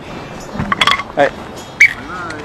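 Short spoken exclamations with a couple of brief, sharp metallic clinks, one near the middle and one near the end.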